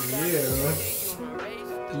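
Aerosol spray-paint can spraying onto concrete, a steady hiss that cuts off about a second in, over background music.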